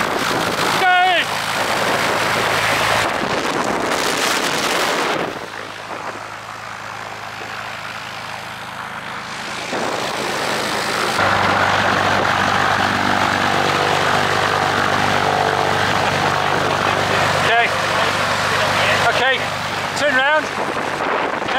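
A light propeller aircraft's piston engine running steadily at idle, growing louder about halfway through, with wind noise on the microphone.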